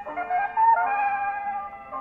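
A microgroove vinyl LP played at 78 rpm on a wind-up acoustic phonograph, its heavy reproducer and 3 mil stylus tracking about 170 grams. The music comes through the horn as a thin, high-less melody of held notes while the stylus wears a ring into the groove.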